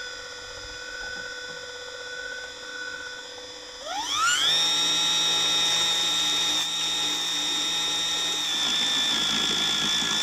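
Gloria Multijet 18V cordless medium-pressure cleaner's pump motor running with a steady whine while it self-primes through a hose from the pool. About four seconds in, its pitch climbs quickly to a higher, louder whine as it runs at full power ('volle Pulle') and the straight jet sprays.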